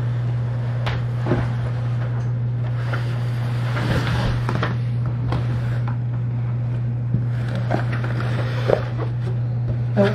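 A steady low hum, with scattered soft scratches, rustles and light knocks of cardboard as a cat moves about inside a cardboard box.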